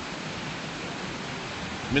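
Rushing river water over turbulent shallows: a steady, even noise.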